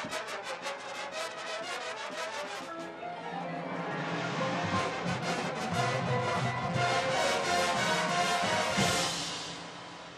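High school marching band playing: about three seconds of rapid, repeated marimba and mallet-percussion strikes. Then the low brass and full band come in and swell, building to a loud hit about nine seconds in that then dies away.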